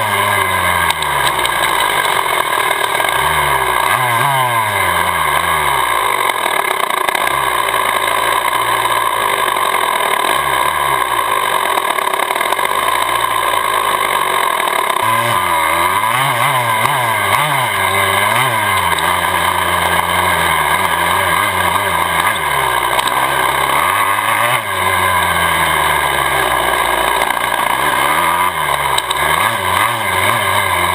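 Motocross bike's engine heard close up from the bike itself, revving up and dropping back again and again as the throttle opens and closes through the turns of a dirt track.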